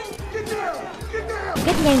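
Film soundtrack: music with a low steady drone under voices. A man's voice-over narration comes in near the end.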